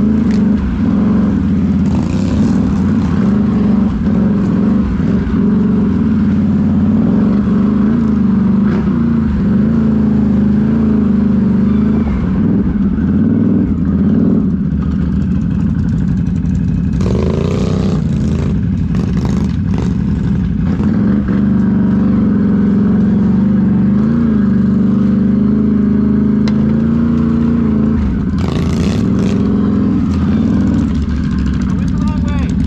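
Can-Am Renegade XMR ATV's V-twin engine running under throttle while riding, its pitch rising and falling with the throttle. A few brief bursts of noise break in about halfway through and again near the end.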